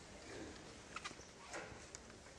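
Faint room noise of a seated audience in an auditorium, with three small clicks in the second half.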